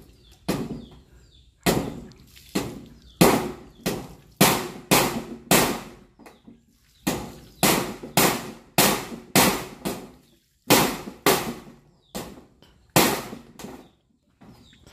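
Hammer driving nails through a corrugated metal roofing sheet into the timber frame: about two dozen sharp, ringing blows, roughly two a second, in runs of several with short pauses between.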